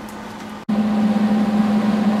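An electric welder running idle with a steady hum from its cooling fan. The hum is faint at first, then cuts out for an instant about two-thirds of a second in and comes back clearly louder.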